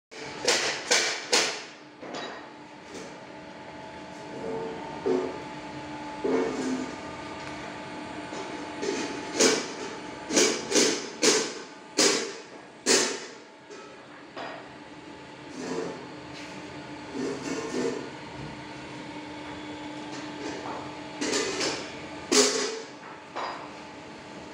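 Belt conveyor drive running with a steady hum, broken by loud, sharp knocks that come in irregular clusters: near the start, in the middle, and near the end.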